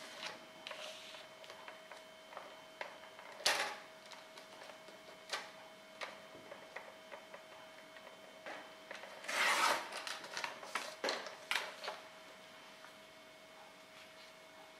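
Paper trimmer and black card stock being handled: scattered clicks and taps, with a louder scraping swish a little past halfway as the trimmer's blade slides along its rail, cutting the card.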